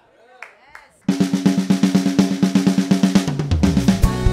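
A live band comes in suddenly about a second in with a fast snare-drum roll over a held low chord. Near the end the low notes step down in a falling run.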